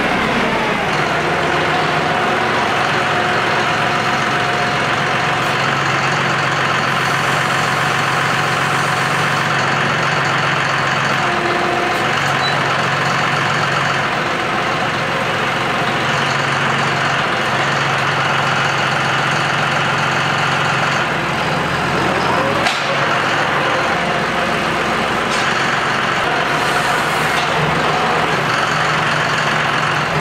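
Farm tractor's diesel engine running steadily as it works a front loader stacking round hay bales, with a single sharp knock a little over two-thirds of the way through.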